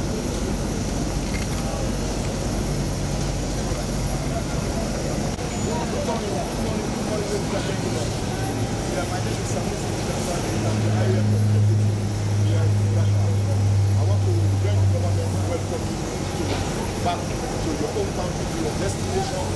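Airport apron ambience: indistinct chatter from a crowd over steady engine noise. A low engine hum grows louder about ten seconds in, holds for several seconds, then fades back.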